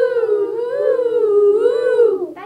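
A group of children's voices holding one long, wavering 'woo', the pitch swaying gently up and down.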